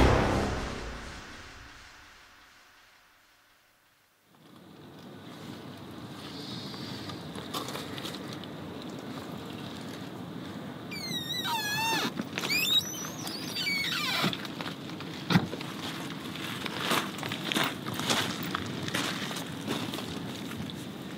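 Background music fading out over the first few seconds, then a moment of silence. Outdoor night ambience follows, with scattered clicks and knocks and, about halfway through, a brief high wavering squeal that falls in pitch.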